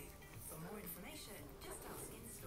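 Shop background: faint, indistinct voices over in-store music playing quietly.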